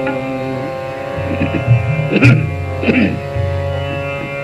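Hindustani classical accompaniment: a steady tanpura drone with a few tabla strokes, two of them sliding down in pitch.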